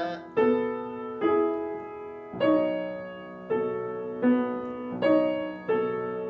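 Acoustic grand piano playing a slow series of chords, about seven in all, each struck and left to ring and fade before the next. This is slow chord-by-chord practice for tone and voicing, weighing how much of each note sounds in the chord.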